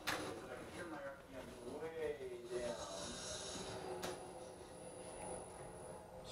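Faint, indistinct voice over a steady room hum, with two sharp clicks, one right at the start and one about four seconds in.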